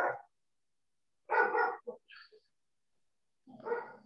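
A dog barking a few short times, through a video-call connection that cuts out the gaps between barks.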